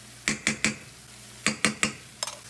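A metal spoon knocked sharply against a stainless steel pan to shake off tomato paste: two quick runs of three knocks, the first about a quarter second in and the second about a second and a half in.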